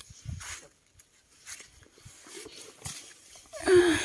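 Cherry tomato plants rustling and stems snapping as ripe tomatoes are picked by hand, in scattered short rustles and clicks. Near the end comes the loudest sound: a short pitched call that bends in pitch.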